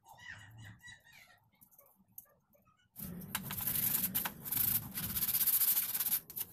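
Faint squeaks of wooden popsicle sticks being pressed together. About three seconds in, a loud rubbing and scraping starts suddenly, as the hands and the stick gun slide across the board.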